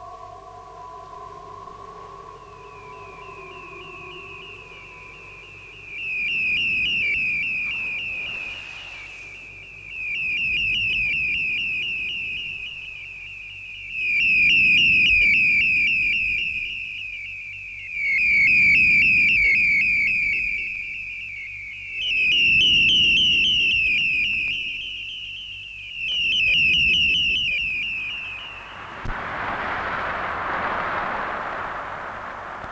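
Abstract electronic music: a few steady held tones fade out early while a high warbling tone enters and holds. Beneath it, low rumbling swells rise and fall about every four seconds, and near the end a wash of hiss comes in.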